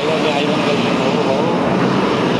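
Highway traffic close by: a heavy truck passing, its diesel engine and tyres running steadily.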